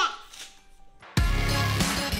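Outro music starts suddenly about a second in, after a brief lull, with a full bass-heavy band sound.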